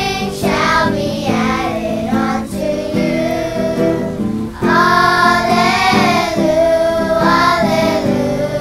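A group of children singing together, with guitar accompaniment. There is a short break between phrases about four seconds in, and the singing comes back louder after it.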